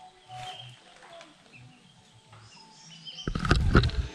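Quiet outdoor ambience with faint short bird chirps, then a loud low rumble on the microphone for the last second or so.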